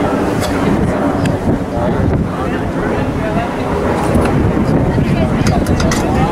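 Wind buffeting an outdoor microphone as a steady low rumble, with faint voices of players and spectators across the field.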